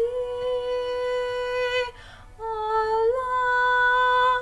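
A woman's solo singing voice holding a long, steady note, then a quick breath about halfway through, then a second long note that steps up a little in pitch and holds.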